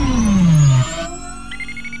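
Synthesized sound effects for a logo animation: a deep tone glides steadily downward and cuts off a little under a second in, leaving quieter electronic tones.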